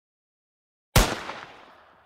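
A single pistol gunshot sound effect: after a second of dead silence, one sharp crack about a second in, with a tail that dies away over about a second.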